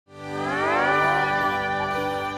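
A cow mooing, its call rising and then held, over background music with sustained chords that fade in at the start.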